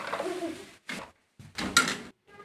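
Short bursts of kitchen clatter as a ladle tips boiled quail eggs into a plastic tub: a brief knock about a second in, then a louder clatter near the end.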